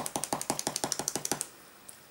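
Eraser rubbed quickly back and forth on drawing paper, about ten short scratchy strokes a second, lightening pencil lines; it stops about one and a half seconds in.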